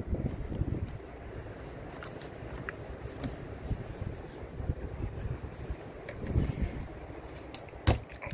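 Diesel exhaust fluid draining from a no-spill half-gallon bottle pushed into a car's DEF filler neck, with irregular low rumbling and a few dull thumps. A sharp click near the end as the bottle is pulled out of the filler.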